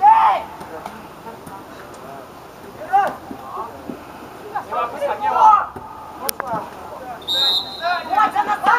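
Players shouting on a football pitch, a sharp knock about six seconds in, then a short referee's whistle blast near the end that stops play.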